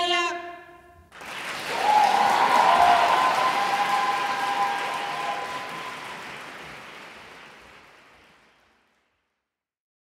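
A held chord of female a cappella folk singing ends just after the start. After a pause of about a second, audience applause rises, peaks about two seconds in, and fades away over several seconds until it stops.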